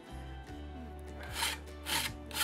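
Two short rasping strokes of a hand tool abrading the edge of a wooden guitar body half, the first about one and a half seconds in and the second near the end, over quiet steady background music.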